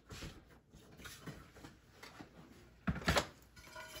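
Faint handling noise and small clicks from hands working on a turntable, then a short cluster of knocks about three seconds in.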